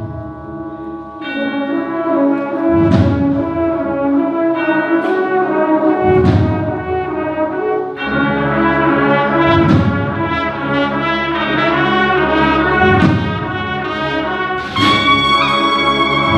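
A cornet-and-drum marching band plays a processional march. Sustained brass chords are punctuated by heavy drum strikes about every three seconds, and a brighter, louder brass entry comes in near the end.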